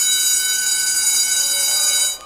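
Steady, high electronic tone sound effect made of several pitches held together, lasting about two seconds, played over an animated title card.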